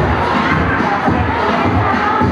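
Dance music playing loudly while a group of dancers shout and cheer over it.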